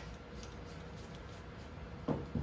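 Faint handling sounds over room tone: a few light ticks and rustles as a t-shirt and a brush are handled on a tabletop.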